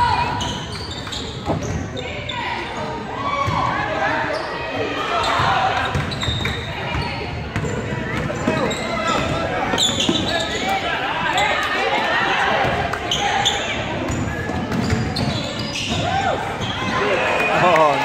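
Basketball game in a gymnasium: a basketball bouncing on the hardwood floor as players dribble, under indistinct calls and shouts from players and spectators.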